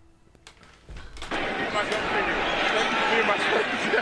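NFL television broadcast audio played back from a phone speaker held to the microphone: a commentator's voice over steady stadium crowd noise, starting about a second in after near silence and sounding thin and narrow.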